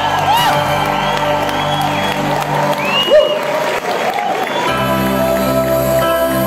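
A concert crowd cheers and whistles while the band's chords ring on. A little before the end, a soft, steady keyboard chord begins.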